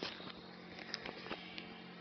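Faint handling noise as the recording device is moved about: a few scattered soft clicks and knocks over a low, steady electrical hum.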